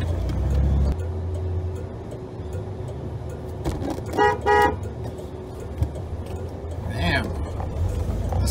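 Cab interior of a 1993 Ford F-150 straight-six pickup under way, its engine a low steady rumble that is heaviest for the first second and then eases off. A car horn gives two short toots in quick succession a little after four seconds in.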